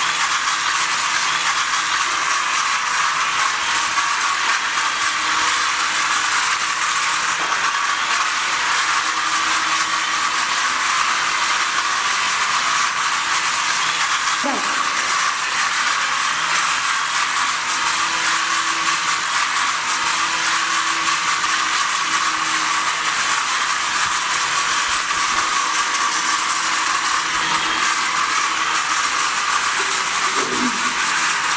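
Small toy remote-control helicopter's electric motors and rotor blades whirring steadily in flight.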